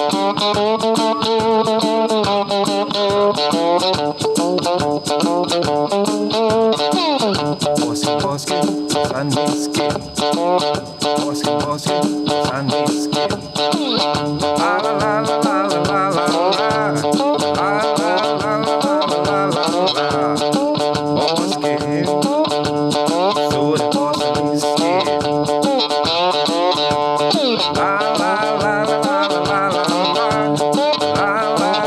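Homemade cigar-box-style slide guitar with a neck cut from a sonokeling-wood hoe handle, played through an amplifier: a blues riff with notes sliding up and down in pitch over a steady rhythm.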